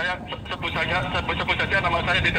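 A man's voice talking over a phone during a call, heard inside a moving car. The car's low running and road rumble continue underneath.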